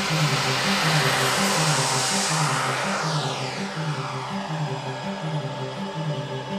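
Music with a steady pulsing beat, over the rushing whine of a turbine-powered RC model jet taking off and passing by. The jet is loudest in the first half, and its pitch falls from about three seconds in.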